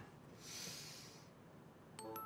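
A faint, short breathy exhale, a snort-like puff of air lasting under a second about half a second in; otherwise near silence.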